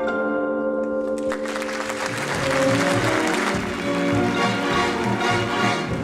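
Theatre orchestra holding a chord, then audience applause rising about a second in over the music, as a new orchestral dance tune with a regular beat gets going.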